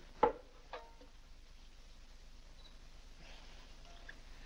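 A sharp knock with a short ringing tone about a quarter second in, then a softer brief pitched note half a second later, followed by faint steady hiss.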